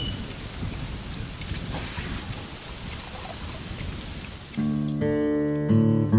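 A steady hiss of background noise, then plucked acoustic guitar music starts suddenly about four and a half seconds in and carries on with changing chords.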